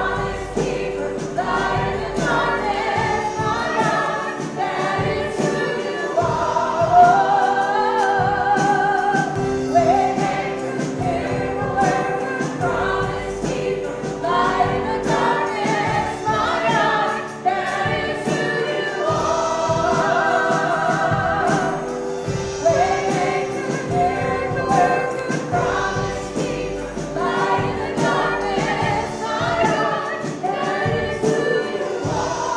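Two women singing a worship song together, accompanied by an electronic keyboard holding sustained chords.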